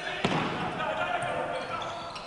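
A futsal ball is kicked once on a wooden indoor court just after the start, with the sound echoing in the hall. Faint voices of players and spectators follow.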